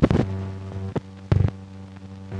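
Steady low electrical hum with crackle from an old film soundtrack running over blank leader at the head of a reel. There are loud pops at the start and again just over a second in.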